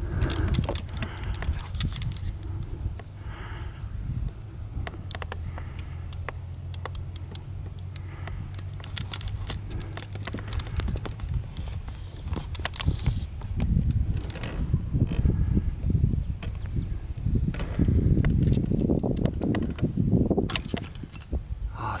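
Rumbling wind and handling noise on a handheld camera's microphone, with many small clicks and knocks. A steady low hum runs through the middle for several seconds.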